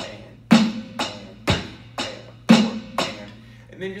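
Electronic drum kit playing a simple steady rock beat, about two strokes a second, bass drum and snare alternating with cymbal strokes in between.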